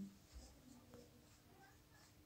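Faint scratching of a marker pen writing on a whiteboard, a few small strokes and ticks.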